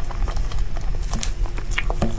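Close-miked mouth sounds of someone chewing a mouthful of cream cake: irregular soft wet clicks and smacks, several a second.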